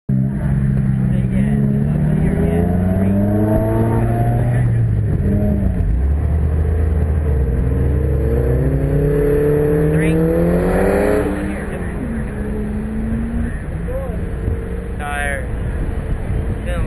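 Subaru WRX's turbocharged flat-four engine pulling away at low speed, its pitch rising twice as the car creeps forward. About eleven seconds in it drops back to a steady idle as the car stops.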